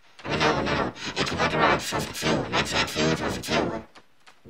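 A person's voice talking, the words unclear.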